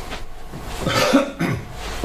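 A person coughs and clears their throat: a short, rough burst about a second in.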